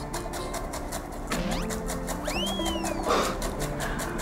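Chef's knife rapidly chopping green onions on a wooden cutting board: a quick, even run of strokes, several a second. Light background music plays under it, with a whistling slide sound effect that rises and falls a little past the middle.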